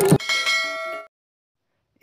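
A bell chime sound effect, of the kind that goes with a subscribe-and-bell animation, rings for about a second and cuts off abruptly.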